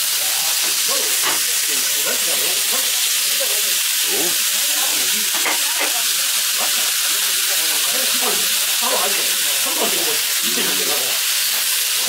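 Thin slices of raw beef brisket (chadolbaegi) sizzling on a hot grill plate over charcoal: a steady, even hiss, with a murmur of voices underneath.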